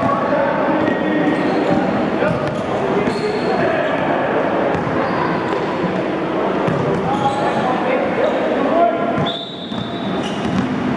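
Basketballs bouncing and dribbling on an indoor gym court, with the steady chatter of many kids' voices in the hall. A short high squeak comes near the end.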